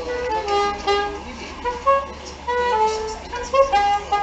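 Soprano saxophone playing a melody, a run of short held notes that change pitch every fraction of a second.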